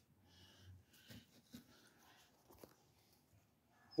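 Near silence, with a few faint light clicks and soft scratches of a tape measure and marker being handled against a wooden board.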